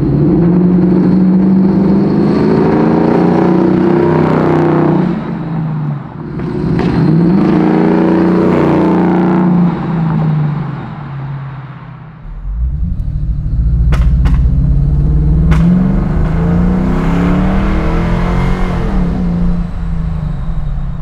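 1965 Ford Mustang fastback restomod's engine accelerating hard, the revs climbing and dropping sharply at each gear change, twice in the first half, then climbing again with a deep rumble. Two sharp pops come in the second half: the backfire that the owner puts down to the engine needing a full tune after a year of sitting.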